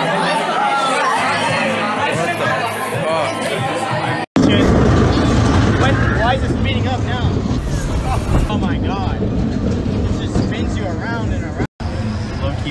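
Party crowd chatter with music playing. After a sudden cut about four seconds in, voices over a steady low rumble while riding a moving fairground ride.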